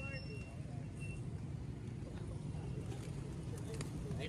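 Steady low outdoor background rumble of a busy open square, with distant traffic, and a few faint ticks near the end.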